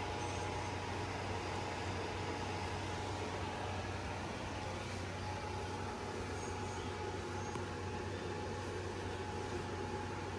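Steady whir and low hum of cooling appliances running, a window air conditioner and a small electric blower fan, with a faint steady whine over it.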